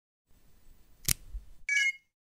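Intro logo sound effect: a faint low rumble, then a sharp click about a second in, then a short bright chime of several ringing tones near the end that stops suddenly.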